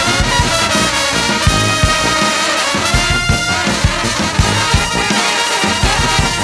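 Brass band playing together, with trumpets, trombones and sousaphone, over a steady beat about twice a second.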